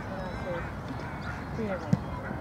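Young players' shouts and calls across a football pitch, with one sharp thump of a football being kicked just before the end.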